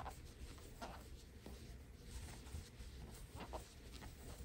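Faint rustling and scratching of thick plush blanket yarn drawn over a large crochet hook and through the fingers as stitches are worked, with a few soft brushes spread through.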